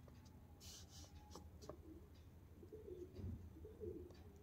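Near silence: room tone with faint watercolour brush dabs on paper, and a soft low sound near the end.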